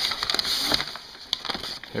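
Cardboard shipping box being opened and rummaged in: cardboard scraping and packing paper rustling, an uneven run of noise with a few sharp clicks.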